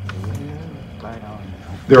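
A pause in a man's speech in a meeting room, with a low steady hum and faint room sounds under it. His voice comes back strongly just before the end.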